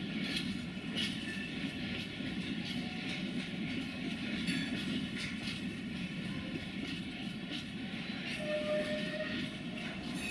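Freight train wagons rolling through a station: a steady rumble with repeated clicks of wheels over rail joints, and a brief tone near the end.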